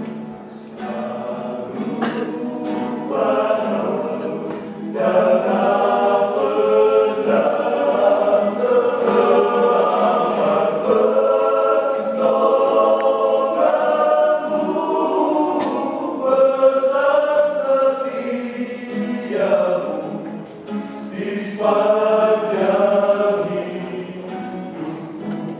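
Male vocal group singing a Christian hymn in several-part harmony, softer at first and fuller from about five seconds in, closing on a held sung 'Amen' near the end.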